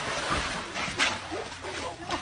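Swimming-pool water splashing as a person flounders after falling in, with a few short, high yelps from a small dog and a sharp click about a second in.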